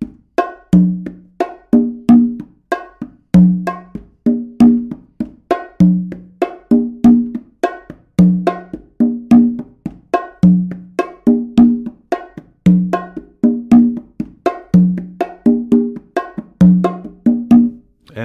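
Congas and bongo played by hand in a repeating samba pattern built on the bossa nova clave: a low open tone on the tumba comes back about every two seconds, with pairs of open tones on the conga and sharp strokes and fingertip taps on the small bongo drum between.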